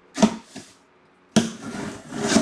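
Box and packaging handling: two short knocks near the start, then a sudden scraping rustle starting past the halfway point.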